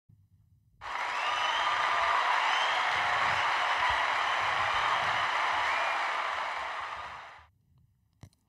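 Applause from a crowd, starting suddenly about a second in and fading out near the end.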